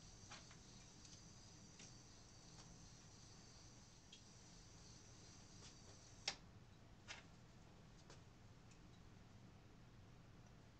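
Near silence with a few faint, sparse clicks and taps of gloved hands handling a small part at a benchtop ultrasonic cleaner; the sharpest click comes about six seconds in, with two softer ones a second or so after.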